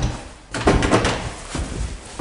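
A door being handled: a thump at the start, then about a second of clattering knocks and rattles.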